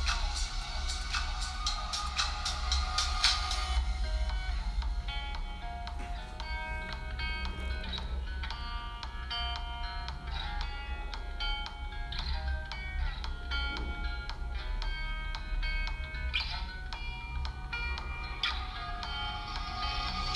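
Background music: quick ticking percussion for the first few seconds, then a melody of short, clear notes.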